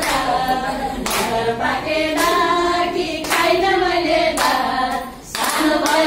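Women singing a Nepali Teej folk song, with hand claps keeping time about once a second.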